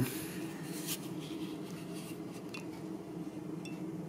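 Steady low room hum with a few faint clicks from a small plastic digital thermometer being handled and turned over in the hand.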